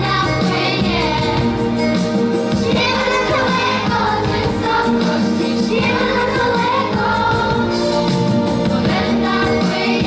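A large group of children singing a song together in chorus over a musical accompaniment.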